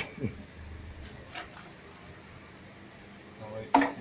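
Two light clicks about a second and a half in, from parts being handled in an engine bay, between brief bits of a man's voice at the start and near the end.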